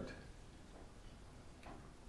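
Near silence: quiet room tone with a couple of faint ticks about a second apart.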